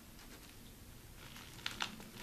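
Faint crinkling of a dry sushi nori sheet being rolled by hand, with a couple of small sharp crackles near the end.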